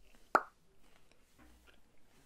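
A single short, sharp click or pop about a third of a second in, over faint room tone.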